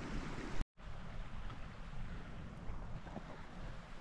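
Wind on the microphone outdoors: a steady low rush with a fainter hiss above it, broken by a brief complete dropout about two-thirds of a second in.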